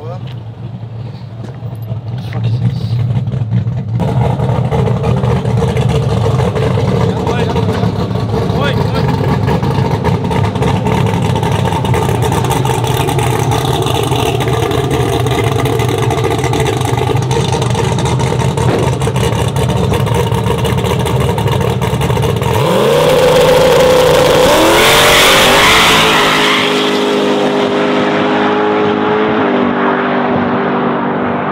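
Twin-turbo LSX V8 of a drag-race Chevy Silverado running loud and steady. About 23 seconds in it revs hard, its pitch climbing in several successive rises like a launch with gear changes, then settles into a steadier, lower drone.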